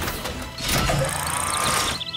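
Robot machinery moving, a cartoon mechanical sound effect that starts sharply and grows louder about half a second in, over background music.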